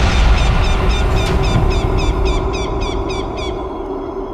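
Suspense background score: a low rumbling drone under a rapid, evenly repeating high chirping figure, about four a second, fading a little toward the end.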